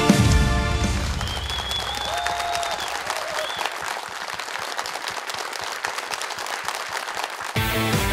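Studio audience applauding as the song's last chord dies away. Near the end, a loud music jingle with guitar cuts in.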